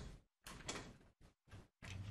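Near silence broken by a few faint, brief rustles and knocks of handling noise, cut in and out by the sound system.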